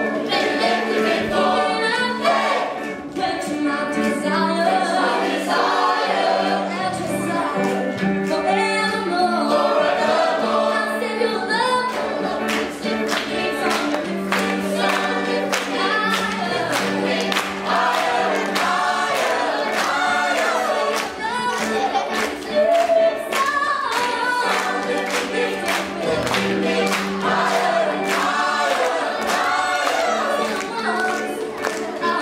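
Youth choir singing with a female lead singer on a microphone, over a steady beat.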